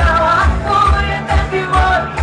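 A woman singing live into a handheld microphone over a pop backing track, with a steady bass beat of about two beats a second.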